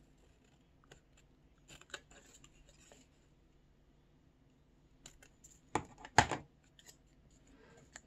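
Small scissors snipping through colored paper in a few quiet cuts, with two sharper, louder clicks about six seconds in.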